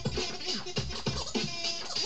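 Vinyl record scratching on a turntable: a record is worked back and forth under the hand, its sound sweeping quickly up and down in pitch over a steady drum beat.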